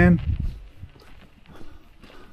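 Faint, soft footsteps of a person walking on a wet, snowy street, right after a man's voice trails off at the start.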